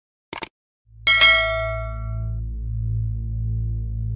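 Subscribe-animation sound effects: a short click, then about a second in a bright bell ding that rings out for about a second and a half. A low steady drone of background music starts with the ding and runs on.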